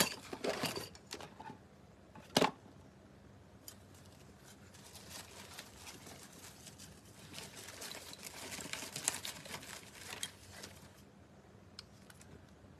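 Rummaging through craft tools and supplies on a table: light clicks and knocks, a sharp knock about two and a half seconds in, then several seconds of rustling and rattling.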